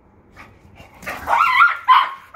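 A dog barking in play: a long, high, wavering bark about a second in, then a short bark at the end.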